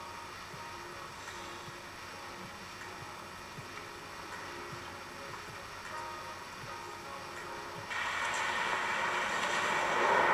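Quiet film soundtrack with a few held tones, heard through a TV speaker. About eight seconds in, the noise of a vehicle driving swells in and grows louder.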